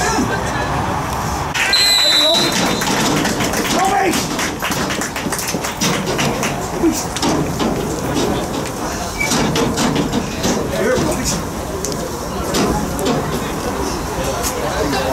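A referee's whistle is blown once, a short high blast about two seconds in: the full-time whistle. Indistinct voices of players and spectators carry on throughout, with scattered sharp claps.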